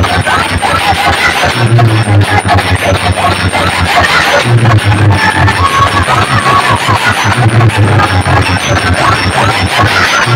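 Dance music played very loud through a large stacked DJ speaker system, with a heavy deep bass line that pulses in and out in repeated runs.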